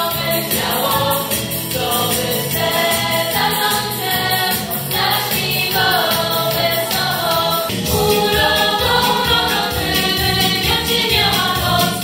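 A girls' vocal group singing a song together through microphones and PA speakers, over an instrumental accompaniment with a steady beat that grows fuller about eight seconds in.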